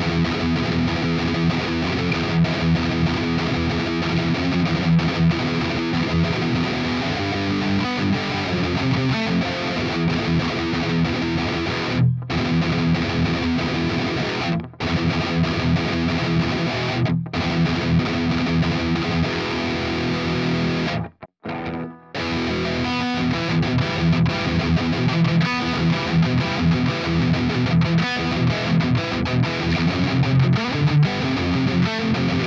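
Distorted electric guitar, a Schecter Hellraiser Solo II through the Amped Roots amp simulator, playing a palm-muted metal riff. For most of the stretch it is picked with a Dunlop Match Pik; after a brief break about 21 seconds in, the riff starts again with a Dunlop Gator Grip pick.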